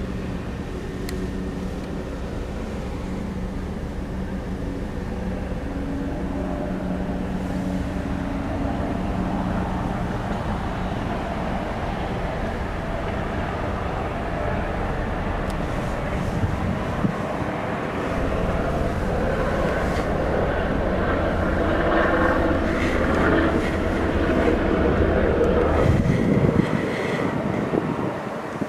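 Steady running hum inside the cabin of a parked 2013 Hyundai Santa Fe Limited with its engine idling, growing louder and busier in the last third, with a few small knocks.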